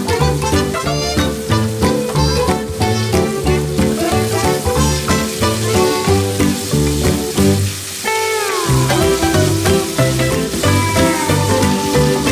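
Upbeat background music with a steady beat, the bass dropping out briefly about eight seconds in, over ground pork and onion sizzling in a frying pan as they are stirred.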